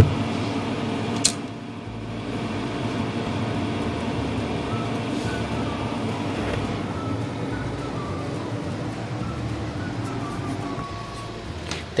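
Monoblock portable air conditioner running: a steady rush of fan and airflow noise as heard through a phone's microphone. A single sharp click about a second in.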